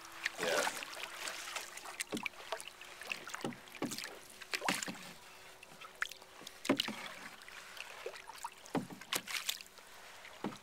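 Wooden canoe paddle stirring and dipping in calm lake water, making a whirlpool: irregular small splashes, drips and swirls every second or so.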